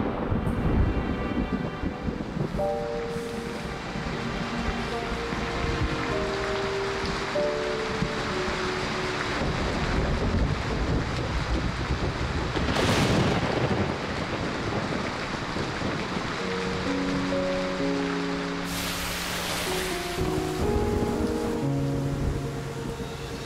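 Steady heavy rain with low rumbles of thunder, swelling about halfway through and again near the end, under soft background music of held notes.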